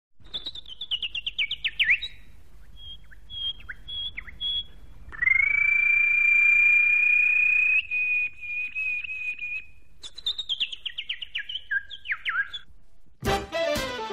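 A songbird singing: a fast trill falling in pitch, a few short high notes, a long steady whistle, then another falling trill. Upbeat music starts about a second before the end.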